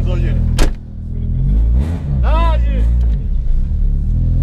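Cabin sound of a Cup race hatchback's engine running, with a car door slammed shut about half a second in. After the slam the engine is revved up and eases back to idle.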